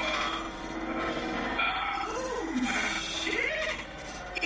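Soundtrack of an animated cartoon clip: a voice gives two wavering cries that rise and fall in pitch in the second half, over a dense background.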